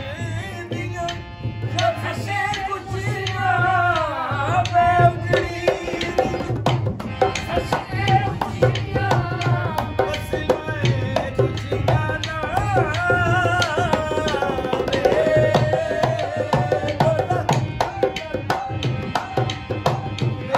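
Saraiki song: a man and a woman singing over a steady drum beat.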